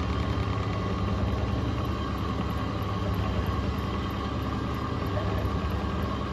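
Distributor test machine's electric drive running steadily, spinning an Accel 59130 HEI distributor at the start of a mechanical advance curve test.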